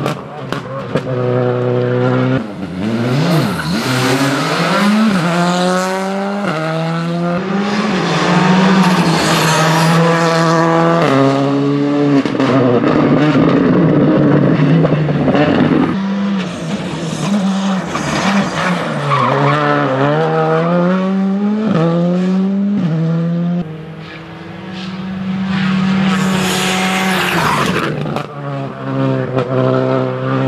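Škoda Fabia rally car's turbocharged four-cylinder engine revving hard at stage speed, its pitch climbing and dropping over and over through gear changes and corners, with tyre squeal. Around the middle it quietens briefly and then builds again.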